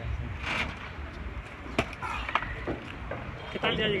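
Low rumble of wind and handling noise on a handheld phone microphone outdoors, with two sharp clicks a little under halfway through. A man's voice starts near the end.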